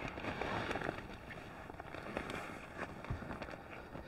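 Soft rustling and creaking of a Haven XL hammock tent's fabric and the inflated Therm-a-Rest air pad inside it as a man shifts his weight and sits up, with a few faint knocks in the second half.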